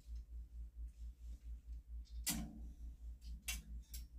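A plastic clothes hanger is hooked onto a metal clothing rack, making a few light clicks near the end. Under it runs a steady low pulse, about four beats a second, and a brief vocal sound comes a little past halfway.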